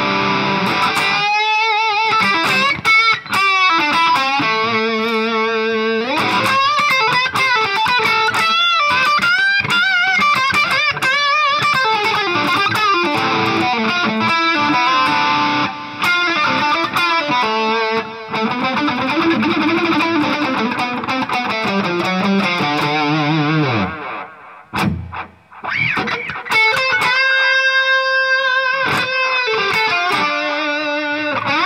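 Electric guitar played through the VoiceLive 3's amp modelling as an overdriven lead tone, with a timed delay whose repeats are modulated and filtered to a megaphone tone, plus a little reverb. It plays continuous single-note lines with bent, wavering notes, broken by a short pause near the end.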